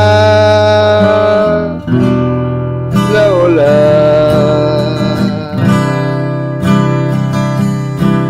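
Acoustic guitar strummed under a voice singing long held notes. The voice slides down into a new note about three seconds in.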